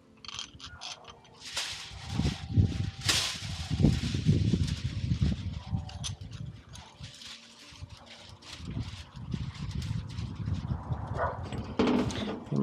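Metal parts of a bearing-press tool being handled: a new washer bearing, cup and nut clicking and rattling on a steel threaded rod as they are fitted and the nut is threaded on, with rustling handling noise in between.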